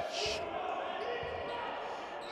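A basketball dribbled on a hardwood court in a sports hall: a few dull bounces over faint hall noise.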